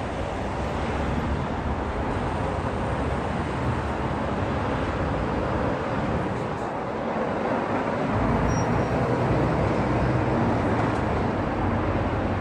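Steady road traffic noise from a city street, a continuous rumble and hiss without breaks, a little louder in the last few seconds.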